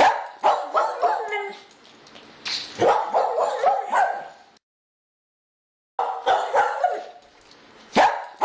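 A dog barking and yipping in short bursts. The sound cuts off to dead silence for about a second and a half, then the same barking starts again.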